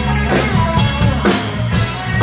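Live rock band playing: electric guitar to the fore over a drum kit keeping a steady beat.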